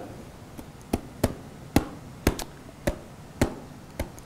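About nine short, sharp clicks, unevenly spaced at roughly two a second, from hands handling a Bible held just below a lapel microphone.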